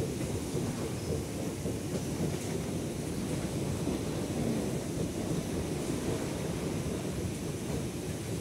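Moving walkway running under a crowd of passengers: a steady low rumble without a break.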